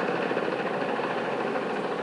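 A steady, even mechanical drone with no distinct beat or change in level.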